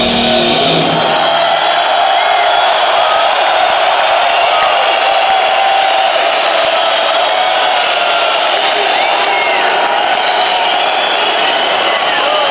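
Large concert crowd cheering and shouting after a heavy metal song: the band's final amplified chord dies away in the first second, leaving a steady wall of cheers with a few high rising-and-falling calls scattered through it.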